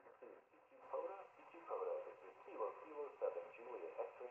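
A recorded CQ call in a man's voice played back through the FX-4CR transceiver's small built-in speaker in its voice-monitor mode. It is faint and thin, not crystal clear, which may be down to the microphone used to record it.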